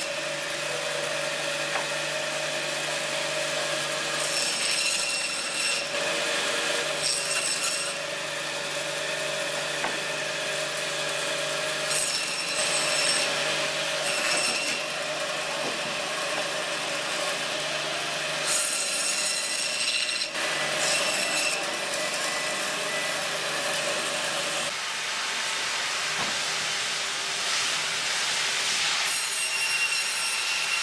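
Braher Medoc band saw running with a steady motor hum while its blade cuts through fish, a continuous rasping, hissing cut noise that swells and eases several times. The low hum drops away late on while the cutting noise carries on.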